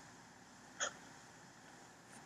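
A single quick scratch of a pen on paper, a short stroke about a second in, as a line is drawn under a handwritten title.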